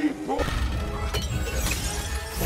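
Film sound effects of a cosmic energy blast: a loud low rumble with crackling and fizzing and a sharp crack about a second in, over background music. A short strained voice sound comes right at the start.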